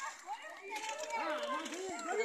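Several people's voices talking and calling out over one another, with no one voice standing out.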